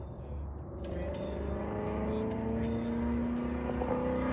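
Race car engine on the circuit, its pitch rising slowly and steadily as the car accelerates, over a steady low rumble.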